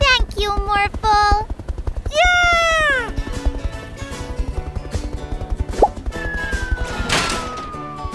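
Cartoon soundtrack: steady, rhythmic background music with short voice-like calls in the first couple of seconds, then a long, slowly falling whistle near the end.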